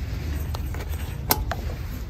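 A packaged set of fabric mini oven mitts being handled as it is taken off a store shelf: one sharp click a little past halfway and a smaller one just after, over a steady low rumble.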